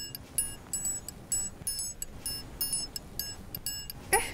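Background music cue of high, tinkling bell-like notes, about three or four quick plinks a second in an uneven pattern.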